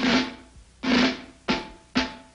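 Four drum strokes in a cartoon's music score, each a sharp hit that rings briefly and dies away. They come a little closer together each time.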